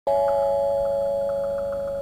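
A chime struck once, its few clear tones ringing on and slowly fading.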